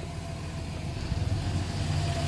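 Delivery step van's engine idling: a low steady rumble with a faint whine above it, growing louder over the two seconds.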